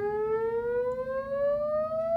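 A test-tone frequency sweep played through a loudspeaker into a Rubens tube: one steady, rather harsh tone climbing slowly and evenly in pitch, with a steady low hum underneath. As the pitch rises, the standing waves in the tube get shorter.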